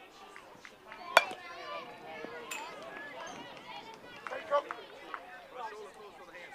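A single sharp crack about a second in, a bat striking a pitched baseball, the loudest sound here; a fainter knock follows about a second later, with players and spectators calling out throughout.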